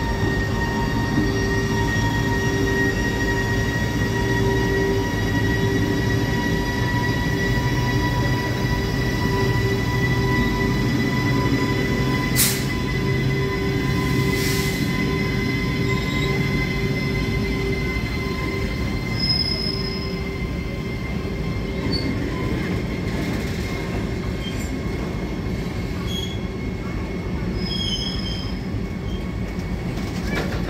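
WAG-12B electric freight locomotive pulling away, its electrics whining steadily with a pitch that rises slowly as it gathers speed, over the rumble of freight wagons rolling past. A couple of sharp knocks come near the middle, and brief high wheel squeals follow in the second half.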